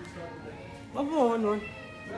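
A single drawn-out meow, falling in pitch, about a second in and lasting about half a second, over faint background music.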